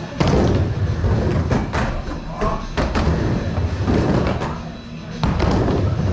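Skateboard wheels rolling on a wooden bowl, a steady low rumble with several sharp clacks from the board, dropping off briefly near the end before picking up again.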